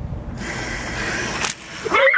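Garden hose spraying water out of a loosely screwed water-balloon filler connection: a hiss that starts a moment in and cuts off about a second and a half in with a sharp click.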